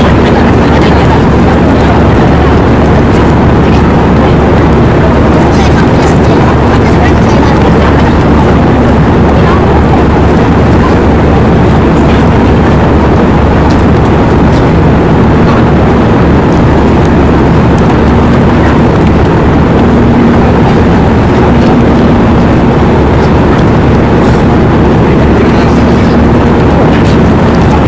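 Steady, loud cabin roar of a jet airliner in cruise flight, with a low steady engine hum under the rushing air noise.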